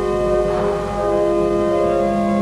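Romsey Abbey pipe organ playing held chords, moving to a new chord about a second in.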